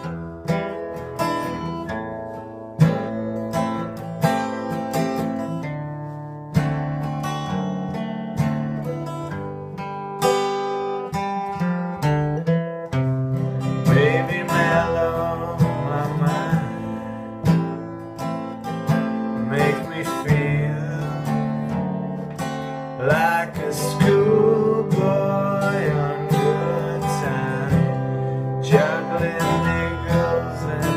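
Steel-string acoustic guitar strummed in a steady, slow chord pattern, the instrumental intro of a song, with a wavering melody line joining over the chords about halfway in.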